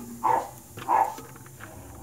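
A dog barking: two short barks about half a second apart.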